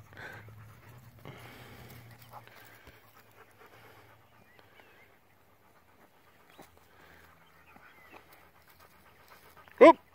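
A dog panting with its mouth open, most clearly in the first two seconds or so, then fainter.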